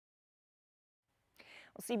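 Dead silence for over a second at a cut between news items, then a soft breath and a woman's voice starting to speak near the end.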